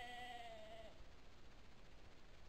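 A sheep bleating once, a call of about a second with a slightly wavering pitch that ends about a second in.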